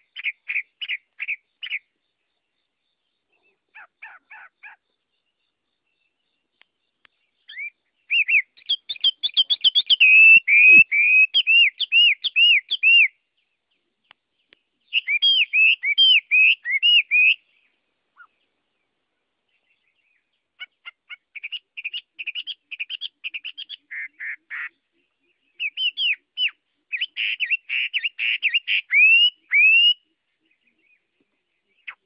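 A caged laughingthrush singing in bouts of quick, repeated whistled notes that sweep up and down in pitch, with pauses of a second or more between bouts. The loudest bout comes about eight to thirteen seconds in.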